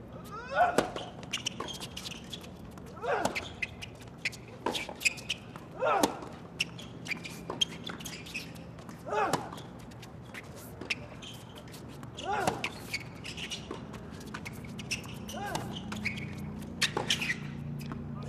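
Tennis rally on a hard court: the ball is struck by rackets back and forth about every one and a half seconds. One player gives a short grunt on each of his own shots, about every three seconds.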